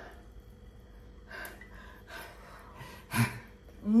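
A person chewing a big mouthful of food, with faint mouth noises and breathing through the nose, and one short, louder breath a little after three seconds in.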